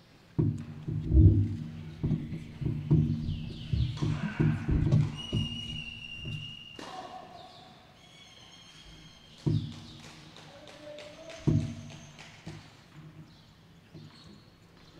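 Tennis balls being struck and bouncing on a hard court: a quick run of sharp knocks for about five seconds, then two single knocks near the end, with a few high squeaks in between.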